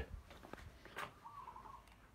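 Faint background with one short, wavering bird call about a second in, alongside a light click.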